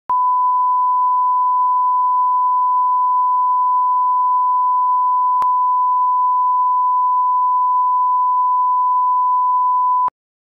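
Steady, loud pure-tone test beep: the broadcast line-up reference tone that runs with colour bars at the head of a TV programme tape, used to set audio levels. A faint click comes about halfway through, and the tone cuts off suddenly at the end.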